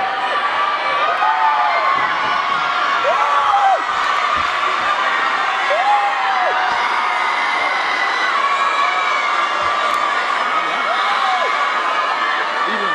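Large crowd of teenagers cheering and shouting, with loud whoops rising and falling above the steady roar.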